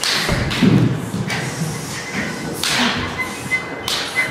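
Dancers' bodies thudding and brushing on a stage floor during floor work, with a heavy thud about half a second in and softer knocks and sliding sounds after it.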